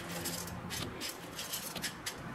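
Whole roasted coffee beans rustling and clicking against each other and a plate as a hand spreads them around, in a series of short scratchy strokes.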